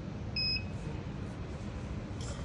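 The touchscreen of a 461G air permeability tester gives one short, high beep about half a second in, acknowledging the press of its Save key, over a low steady background hum.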